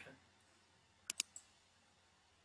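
Computer mouse button clicked twice in quick succession about a second in, followed by a fainter third click.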